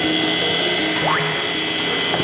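Electric coffee grinder running steadily with a high motor whine, over background music. A brief rising whistle comes about a second in.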